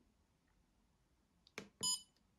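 A trail camera's menu button pressed with a short click, then the camera's brief electronic key beep near the end.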